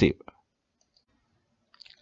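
The last syllable of a narrator's word, then a couple of faint short clicks and a near-silent pause.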